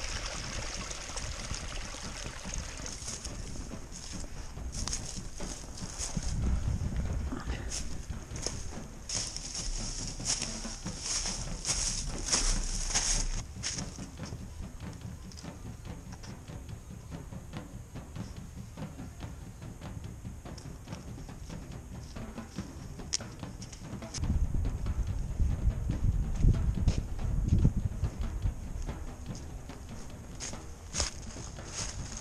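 Footsteps of a hiker walking through dry leaf litter and across a wooden plank footbridge, a quick run of crunches and knocks. Low rumbles on the microphone come about six seconds in and again from about 24 seconds.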